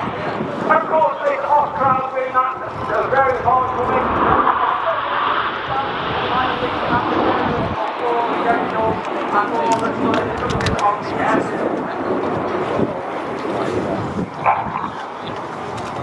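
Voices of people talking, over a steady rush of jet noise from the Red Arrows' BAE Hawk T1 jets and wind on the microphone.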